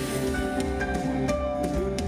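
Live band playing: electric and acoustic guitars holding notes over bass and drums, with cymbal hits recurring at a steady pulse.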